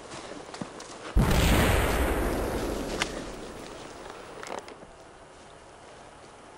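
A single loud bang about a second in, followed by a rumble that fades over about three seconds, then a couple of sharp clicks.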